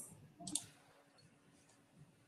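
A single brief click about half a second in, followed by near silence with faint room tone.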